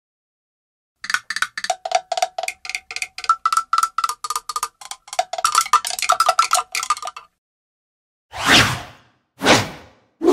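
Cartoon sound effects: a quick run of short, bell-like struck taps, about five a second and shifting in pitch, that stops after about six seconds. Two whooshes about a second apart follow near the end.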